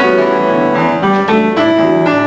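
Upright acoustic piano playing a slow jazz ballad: held chords under a melody line, the notes changing every fraction of a second.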